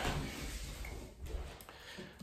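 Rustling of clothing against a clip-on lapel microphone as a man moves up off the floor, fading out over the first second or so, with a small click a little after that.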